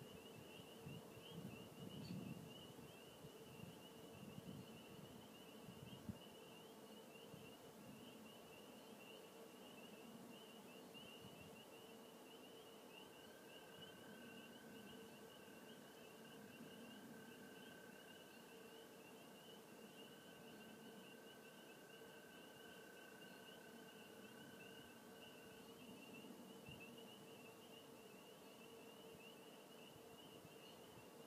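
Near silence: faint room tone with a steady high-pitched whine, and a second faint tone through the middle.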